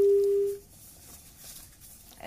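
A single steady telephone-line beep, about two thirds of a second long, followed by faint line hiss. The caller's line has not come through; the connection seems to have been lost.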